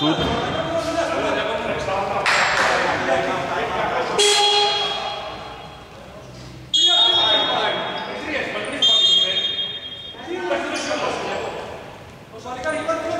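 A basketball referee's whistle, blown in three shrill blasts of a second or two each, about four, seven and nine seconds in, as play is stopped for a timeout. Voices carry in the indoor arena around them.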